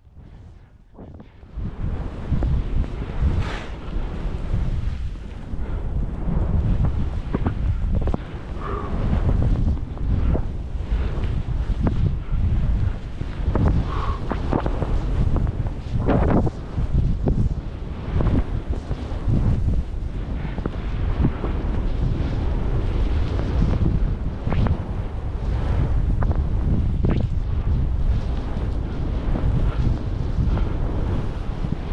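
Wind buffeting the microphone of a skier's body-mounted camera while skiing deep powder, mixed with the rush of skis through the snow. It starts about a second and a half in and goes on in uneven surges.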